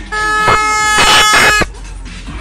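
A vehicle horn blowing one steady, loud note for about a second and a half, cutting off suddenly.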